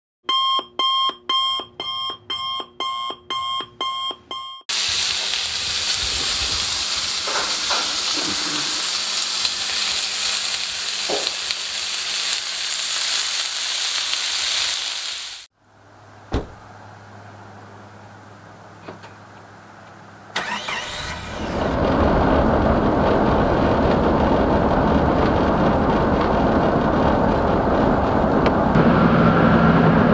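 An alarm beeping in quick, evenly spaced pulses, about two a second, for the first four seconds, followed by a loud steady hiss lasting about ten seconds. About twenty seconds in, a car's engine and road noise, heard from inside the cabin, start up and run steadily.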